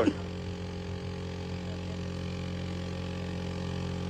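A steady low machine hum made of several even tones, unchanging throughout.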